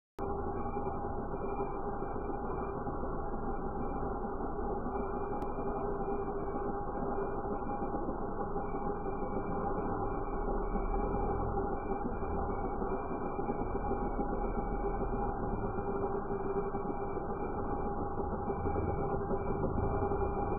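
Handheld angle grinder with a water feed grinding a design into a glass pane: a steady motor hum at a constant pitch over a continuous wash of grinding noise.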